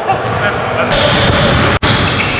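Basketball bouncing on an indoor gym court, with players' voices in the background. The sound drops out for an instant near the end.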